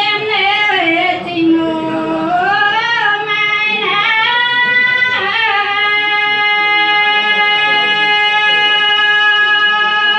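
A woman singing a Dao (Iu Mien) folk song solo, her voice gliding up and down between notes, then holding one long steady note from about halfway through.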